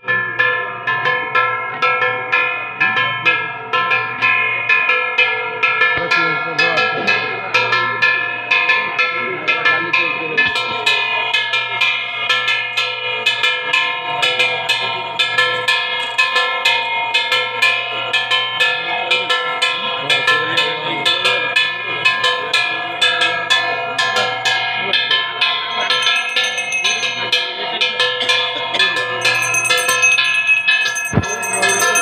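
Metal worship bells rung continuously with fast, even strokes, several ringing tones sounding together. A higher ringing tone joins near the end.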